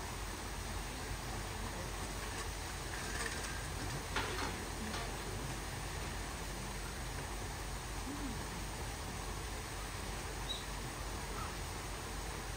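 Steady background noise with a few faint, brief sounds about four seconds in and a short, high chirp near the end.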